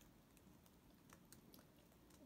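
Faint, irregular keystrokes on a computer keyboard, a handful of soft clicks over near silence.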